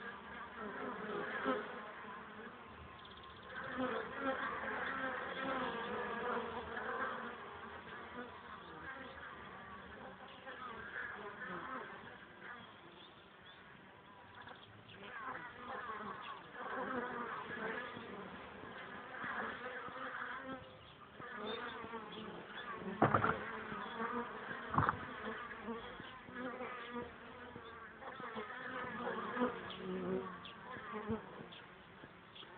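Honeybees buzzing in flight at a hive entrance. Individual bees swell and fade as they pass close, with rising and falling buzz tones. There are two short sharp knocks about three-quarters of the way through.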